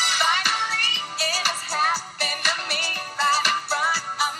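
A recorded pop song playing, with a singing voice over the music.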